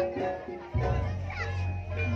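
Live Javanese gamelan-style music accompanying a Buto dance, with struck metallophone notes and a deep low tone that comes in suddenly about three-quarters of a second in and holds. Children's voices from the crowd sound over the music.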